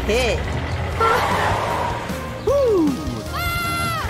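Cartoon soundtrack: background music under short wordless vocal sounds from animated characters, with a brief noisy swish about a second in and a steady held high note near the end.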